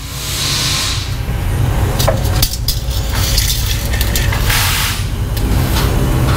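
Forklift running steadily as it lowers the side-by-side, with two bursts of hissing, one near the start and one about two-thirds of the way through, and a few sharp clicks.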